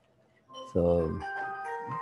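A short electronic chime tune of a few clear tones stepping up and down in pitch, starting about a second in and running under a man's spoken "so".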